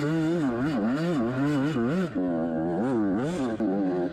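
Yamaha YZ85 two-stroke single-cylinder dirt bike engine revving up and down over and over as the throttle is worked on and off, its pitch climbing and dropping several times.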